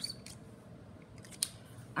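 Quiet room tone with a faint scratch and one sharp click about a second and a half in, as felt-tip markers are handled and swapped.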